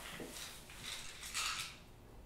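A few short rustling, scuffing noises of things being handled, the loudest about a second and a half in.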